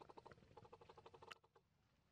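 Faint, rapid chatter of short squeaky pulses, about ten a second for just over a second, ending in a sharp click: a long-tailed macaque calling.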